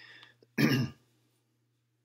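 A person clearing their throat once, a short loud rasp about half a second in, just after a faint breath.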